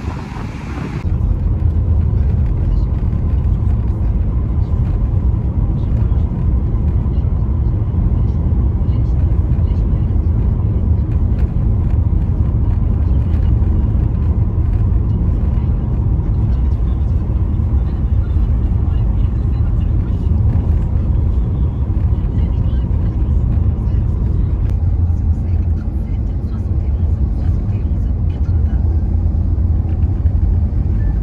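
Steady low rumble of a car driving, heard from inside the cabin: road and engine noise. It cuts in about a second in, replacing a brief wash of wind and surf.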